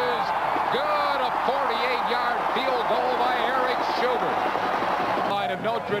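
Large stadium crowd of many voices cheering and shouting at a steady level after a made field goal.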